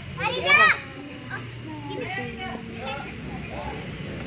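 Children's voices: a loud, high-pitched shout about half a second in, then quieter chatter and calling.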